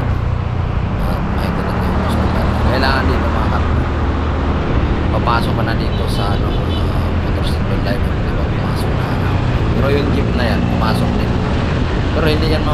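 Motorcycle engine running steadily at cruising speed under a constant rush of wind and road noise, heard from a camera mounted on the moving bike.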